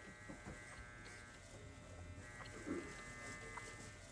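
Electric hair clippers buzzing faintly and steadily during a haircut.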